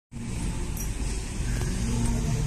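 Engines of a slow line of road vehicles passing close by, a steady low engine noise.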